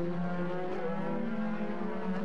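V8 engine of a DTM touring car running at speed, a steady droning note.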